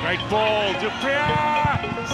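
A male football commentator's voice in two drawn-out exclamations reacting to a shot at goal, the second one longer, each rising and falling in pitch.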